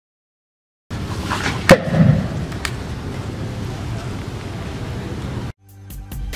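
Homemade PVC-pipe launcher fired once: a single sharp crack about two seconds in, followed almost at once by a dull low thump, over steady outdoor background noise. Electronic music starts near the end.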